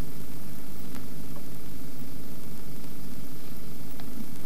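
Steady hiss with a low hum beneath it, unchanging throughout: the background noise of an old film soundtrack, with no distinct event.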